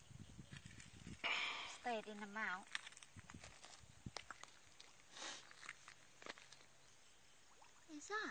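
Quiet outdoor ambience by a pond. A short soft hiss comes about a second in, then a brief murmured voice, with scattered faint clicks and another soft hiss later.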